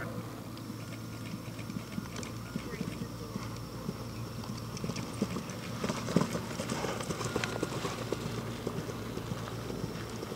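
Hoofbeats of a galloping horse on turf, growing louder about six seconds in as it lands from a fence close by, with one heavier thud there, then fading as it gallops away.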